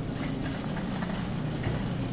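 Steady low background hum of a large store, with faint rustle and ticks of the phone being carried close against clothing.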